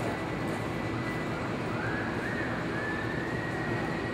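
Steady rumbling background noise, with a faint high, thin tone that bends up and then holds from about halfway through.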